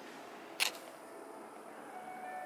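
A single sharp click about half a second in, brief and crisp, over the low steady room tone of a large hall with faint sustained tones.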